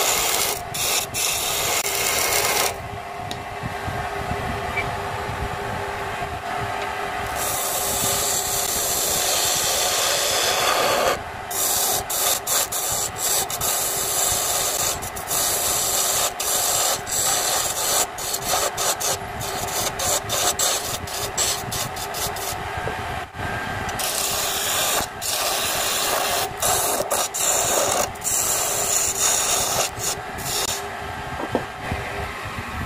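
A hand chisel cutting a mahogany blank spinning on a wood lathe: a continuous rasping scrape of the steel tool on the turning wood. About three seconds in the cutting goes duller for several seconds. Through the second half the scrape keeps breaking off in short, rapid interruptions.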